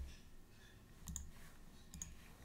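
A few faint clicks of a computer mouse, about a second in and again near the end.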